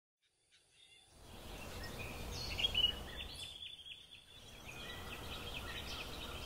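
Faint outdoor ambience of small birds chirping over a low steady rumble, starting about a second in and dipping briefly in the middle.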